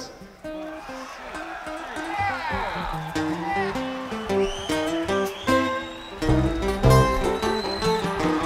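A live acoustic rock band starting a song: acoustic guitar notes picked alone at first, with bass and drums coming in about six seconds in.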